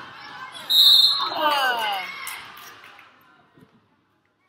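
A referee's whistle blows sharply under a second in, stopping play. Spectators' voices follow, their cries falling in pitch, then the gym goes quiet.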